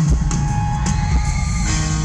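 Live rock band playing loudly through the concert sound system: drum kit, electric bass and guitar in an instrumental passage.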